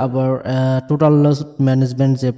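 A man's voice speaking in level, drawn-out syllables.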